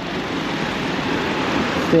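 Street traffic passing close by: a van driving past, giving a steady rush of tyre and engine noise that builds slightly.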